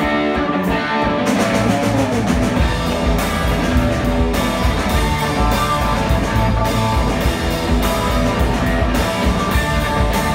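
Live rock band playing an instrumental passage: electric guitar with bass guitar and drums coming in at the start, and cymbals joining about a second in. No singing.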